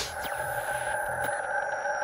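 Sustained electronic ringing tone of a logo-animation sound effect, held steady, with faint high tones gliding slowly downward and a few faint ticks.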